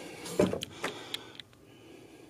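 A few light clicks and rattles as a small plastic remote bass knob and its cable are picked up and handled, spread over the first second and a half.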